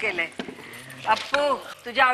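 Speech in short phrases, broken by a brief pause that holds a faint light rattle or jingle.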